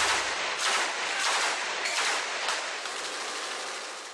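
Machine-gun fire in a firefight: a string of sharp shots, roughly two a second, over continuous loud noise.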